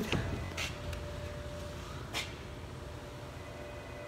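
Low, steady background hum with a faint steady tone running through it, broken twice by a brief soft noise, once about half a second in and once about two seconds in.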